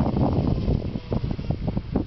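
Wind buffeting the microphone in uneven gusts, a ragged low rumble.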